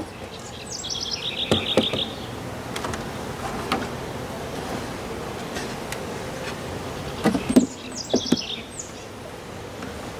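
A songbird singing two short phrases of quick repeated notes, about a second in and again near eight seconds, over the steady hum of honey bees. Knocks of a beehive's wooden inner cover and metal-clad top cover being set in place, the loudest a pair just past seven seconds.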